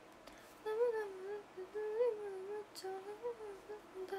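A young woman humming a melody with her mouth closed, starting about a second in and carrying on in a smooth, wavering tune.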